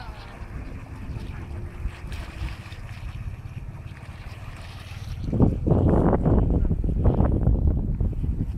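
Wind buffeting the phone's microphone: a low rumble that turns loud and gusty about five seconds in.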